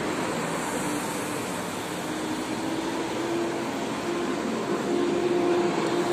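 Steady city street traffic noise, with a faint engine hum that grows slightly louder in the second half.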